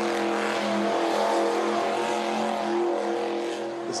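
Monster truck engine running loud with a steady, held note and a rushing noise over it.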